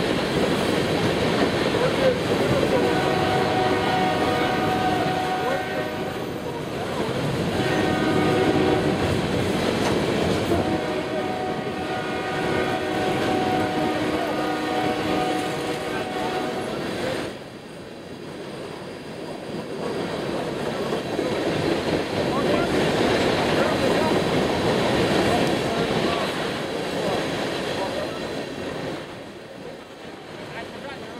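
Empty coal hopper cars rolling past with steady wheel-on-rail clatter. A train horn sounds in three long blasts from a few seconds in until just past the middle.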